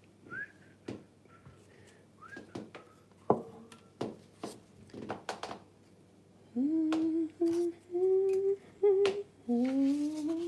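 A person humming a tune in a run of held notes, starting about six and a half seconds in. Before that come scattered clicks and knocks, with a few short rising chirps.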